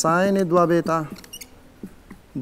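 A man's drawn-out voice for about the first second. About 1.3 s in, a whiteboard marker gives a short, high squeak as it writes on the board.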